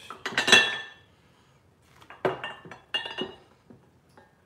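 Decorative glass lemons clinking against each other as they are handled. A loud clink comes about half a second in, and two more clusters of clinks follow after about two and three seconds, each ringing briefly.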